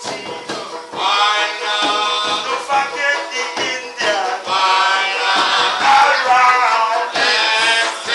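A live acoustic reggae band: a man singing over hand drums and strummed banjo and guitar, with steady drum strokes throughout.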